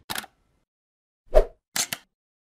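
Logo-intro animation sound effects: a short click, then a pop about one and a half seconds in, the loudest sound, followed by two quick clicks near the end.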